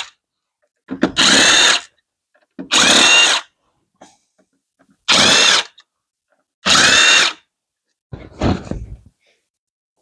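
Cordless power driver with a 10 mm socket running in short bursts as it backs out the valve-cover bolts one by one. There are four runs of under a second each with pauses between them, then a fainter, shorter one near the end.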